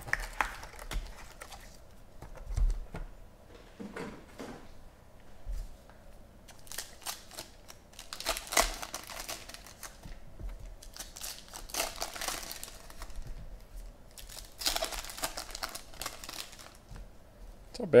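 Trading-card pack wrappers crinkling and tearing as packs are opened by hand, in several bursts of rustling with a few light clicks, the louder bursts in the second half.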